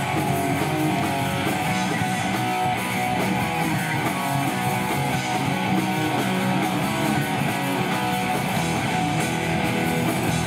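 Live pop-punk band playing a song, electric guitars strumming steadily.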